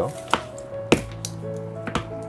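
Three sharp plastic clicks from a Bakugan Evolutions Sharktar prototype ball being snapped and pried at, the loudest about a second in, as it fails to spring open: its spring is too tight, the owner thinks. Steady background music runs underneath.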